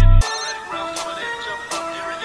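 Dark trap instrumental beat: the heavy 808 bass and drums cut out about a quarter second in, leaving a melody of short steady notes stepping between pitches with a few sparse hi-hat ticks.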